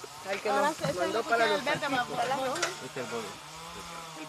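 Several people talking at once in the background at a meal table, fading out near the end, over a faint steady hum.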